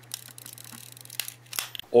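Scattered light clicks and small rustles over a steady low hum, with a few sharper clicks near the end.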